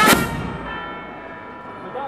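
A military band's bass drum and hand cymbals hit one last beat right at the start, then church bells ring on with steady tones as the cymbals' crash fades.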